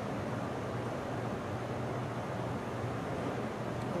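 Steady background hiss with a faint low hum: room tone, with no distinct sound from the pipette pump.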